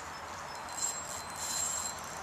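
Small fishing reel being cranked against a hooked fish, a faint high-pitched whir from just under a second in until near the end, over steady outdoor background hiss.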